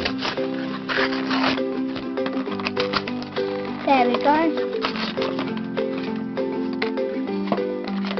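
Background music with steady held chords running throughout, a few short clicks, and a brief gliding voice-like phrase about four seconds in.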